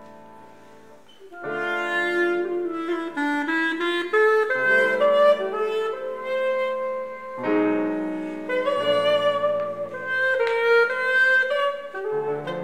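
A clarinet ensemble with piano and electric bass plays, with a small high clarinet leading the melody. A held chord fades out in the first second, then the band comes back in about a second and a half in with a lively melody over bass notes.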